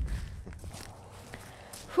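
Faint footsteps of walkers on a sandy, rocky trail, with a low wind rumble on the microphone that dies away in the first half second.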